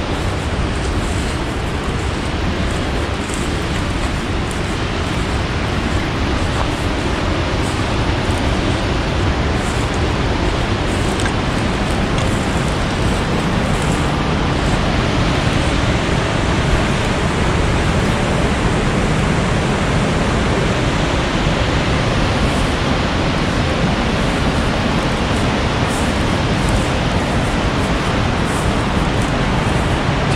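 Steady rushing of river rapids pouring over low, stair-stepped rock ledges.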